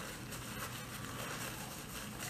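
Faint chewing and mouth sounds of people eating fried chicken, low and steady with no distinct loud events.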